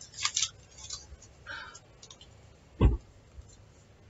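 Paper yarn labels rustling as they are handled, with a single dull thump about three seconds in.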